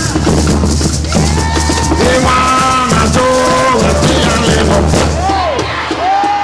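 Live Garifuna drumming: several large hand drums struck in a dense steady rhythm, with a group of voices singing long held notes over them.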